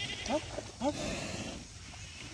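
An animal gives two short calls that rise in pitch, about half a second apart.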